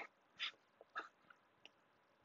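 Near silence: room tone with four or five faint, brief noises spaced about half a second apart.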